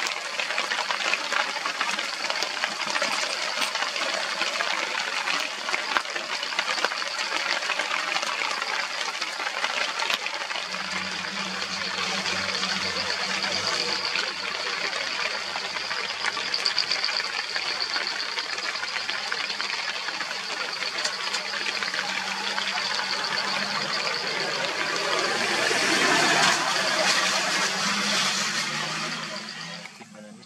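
Steady rain: a dense hiss with many small drop impacts. A low hum joins about a third of the way in, and the rain swells near the end before fading out.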